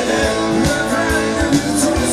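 Live rock band playing: electric guitar and bass over a drum kit keeping a steady beat of about two hits a second.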